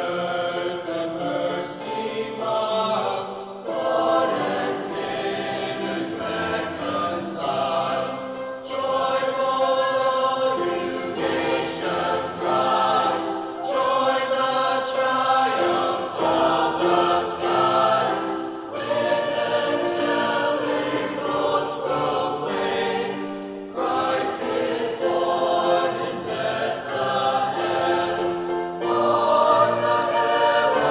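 Mixed choir singing in harmony: held chords that change every second or so, in phrases broken by short pauses every few seconds.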